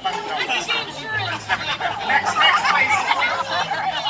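Indistinct talking, several voices overlapping.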